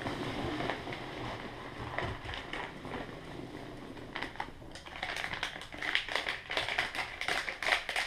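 Hands rummaging through foam packing peanuts in a cardboard box, then handling a plastic-wrapped part: a low rustle at first, turning about halfway through into a busy run of quick rustles and crinkles.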